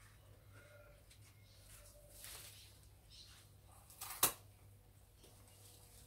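Large garden leaves rustling as they are handled and gathered, with one sharp snap about four seconds in as a leaf stalk is severed.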